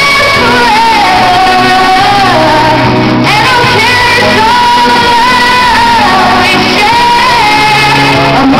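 A woman singing a pop ballad over a karaoke backing track, holding long notes, recorded loud.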